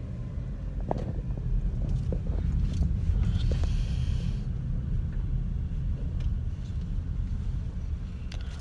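Car driving, heard from inside the cabin: a steady low rumble with a few light knocks and a brief hiss about halfway through.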